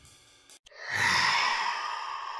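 A long, breathy, sigh-like exhale swells about half a second in and then slowly fades. It follows the last of a drumbeat music track.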